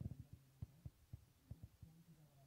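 Faint, irregular low taps of a marker pen against a whiteboard during writing, about a dozen in two seconds, over a steady low hum.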